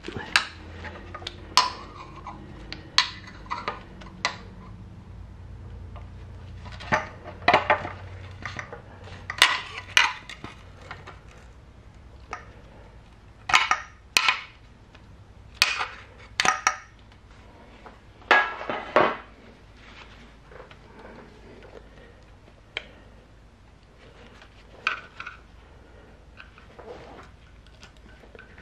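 Scattered clinks and knocks of metal parts and a screwdriver being handled on a motorcycle engine's cylinder head as the valve cover is lifted off and the rubber gasket is worked free. The sharp knocks come irregularly, several a few seconds apart, and thin out in the last seconds.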